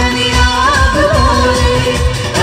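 A Malayalam Mappila song: a melismatic singing voice over a steady low beat, the vocal line wavering most strongly about half a second in and lasting roughly a second.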